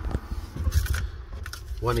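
Short rustling and scraping of handling noise, likely the paper fuse diagram being moved, over a low steady rumble.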